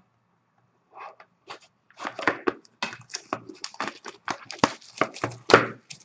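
A sealed cardboard hockey card box being handled and its plastic wrap torn open: a run of quick crinkling and crackling that starts about a second in and grows busy from about two seconds on.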